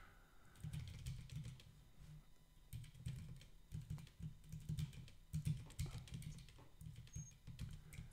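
Typing on a computer keyboard: faint, irregular key presses, with a short pause about two seconds in.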